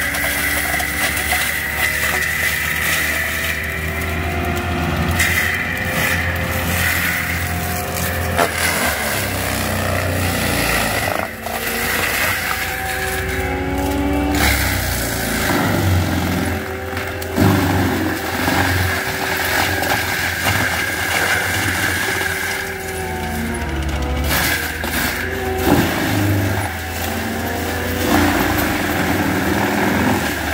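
ASV RT-120 Forestry tracked loader's turbo-diesel engine running hard, driving a Fecon Bullhog forestry mulcher drum that grinds brush and stumps into the ground. There is a steady high whine throughout, and the engine note rises and dips as the load changes.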